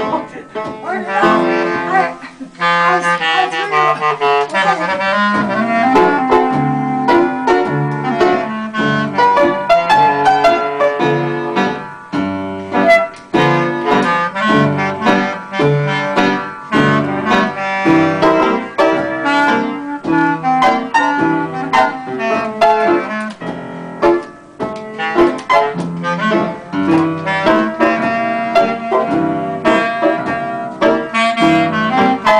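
Clarinet and piano playing a tune together, with a brief dip about two seconds in before the playing carries on continuously.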